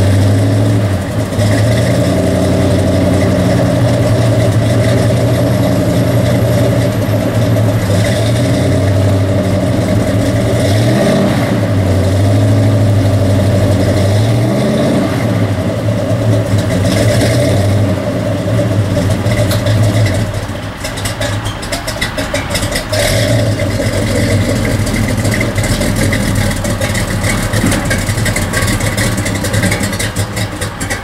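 1970 Chevelle SS 396's big-block V8 running and being revved a couple of times. Its note changes and drops about two-thirds of the way through as the car starts to back down the trailer ramp.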